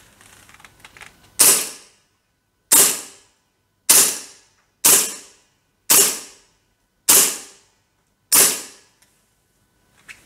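WE Tech Beretta M92 gas blowback gel blaster pistol firing seven single shots, about one a second. Each is a sharp crack that trails off briefly in the small range. A few faint handling clicks come before the first shot.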